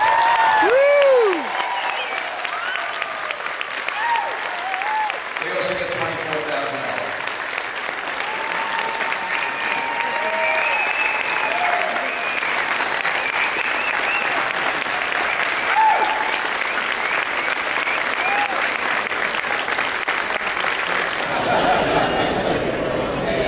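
A large audience applauding and cheering, with scattered shouts and whoops over steady clapping.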